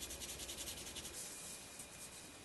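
Pencil shading on drawing paper: quick back-and-forth strokes, about ten a second, that fade out about a second in.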